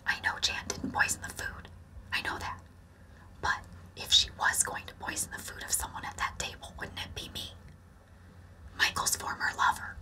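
A woman whispering to camera in short phrases, with a few pauses.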